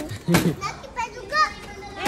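Children's high-pitched voices calling and chattering, with one short knock about a third of a second in.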